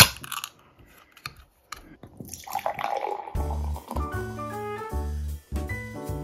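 A beer can's pull tab is snapped open with a sharp pop and a hiss of escaping gas, and the beer is then poured foaming into a glass about two seconds in. Background jazz music starts a little over three seconds in.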